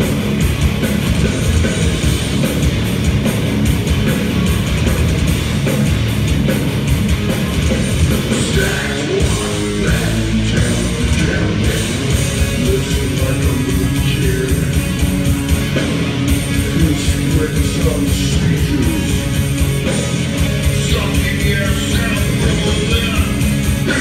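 A heavy metal band playing live and loud: distorted electric guitars, bass and drums, with a vocalist singing over them.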